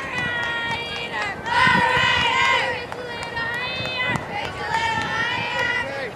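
Girls' voices chanting a softball cheer in long, drawn-out shouted notes, one after another.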